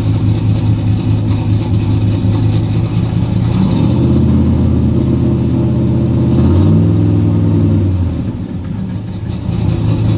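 1969 Corvette's carbureted small-block V8 with side-mount exhausts running while it warms up after a cold start. The engine speed picks up about three and a half seconds in, is held higher for a few seconds, then drops back to idle near the end.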